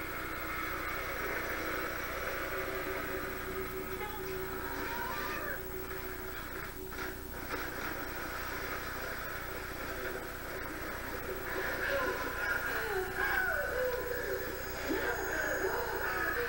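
TV episode soundtrack playing from speakers in the room and picked up by the microphone: muffled dialogue over a steady background, with pitched, gliding voices in the last few seconds.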